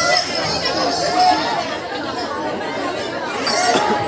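Several people's voices chattering over a crowd, with the music mostly dropped away.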